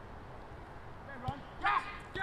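Faint outdoor background noise, then a brief faint shout near the end.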